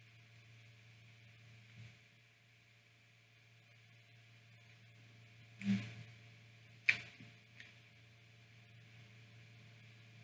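A person quietly eating with closed-mouth chewing over a low steady room hum. A bit past halfway comes a short hummed "mm" of enjoyment, then a sharp single click about a second later.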